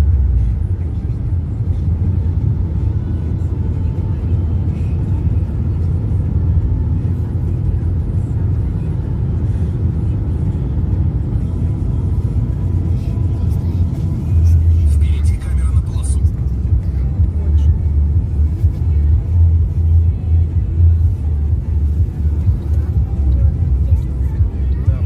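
Steady low road and engine rumble inside a moving car's cabin. It grows louder a little past halfway through.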